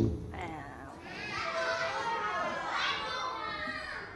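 A class of young children chattering and calling out all at once, many high-pitched voices overlapping.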